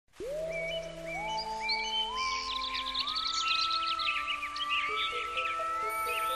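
Soft ambient intro music of held notes that climb step by step about once a second, with birdsong chirping over it.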